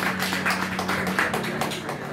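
Audience clapping: a quick, irregular run of separate hand claps, over a steady low hum.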